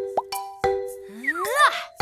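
Light children's background music with plucked, mallet-like notes about every half second. A short rising 'plop' sound effect comes just after the start, and a cartoonish cluster of rising and falling gliding tones fills the second half.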